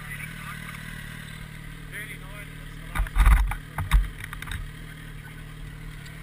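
Motorcycle engine idling steadily, with a few loud, low thumps about three and four seconds in.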